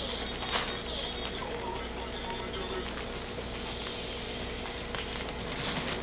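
Dark compost trickling out of a plastic bottle onto a pile, a faint rustle with a few light clicks, over a steady background hiss and hum.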